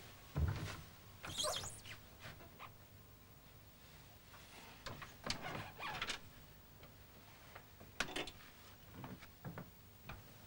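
An old wooden wardrobe being opened: knocks and handling noises with high creaks of its door, and a sharp click about eight seconds in.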